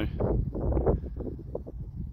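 Wind buffeting a phone's microphone outdoors, an irregular low rumble with gusty bumps that eases off in the second half.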